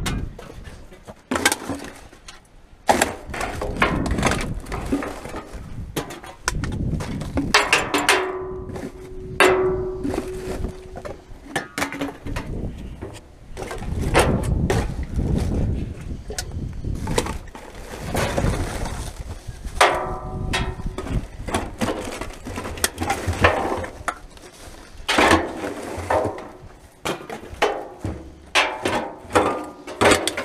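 Rubbish being rummaged through in a rusty steel drum bin with a gloved hand and a reach grabber: irregular knocks, rattles and rustles, with clinks of cans and bottles striking each other and the drum. A few clinks ring on briefly.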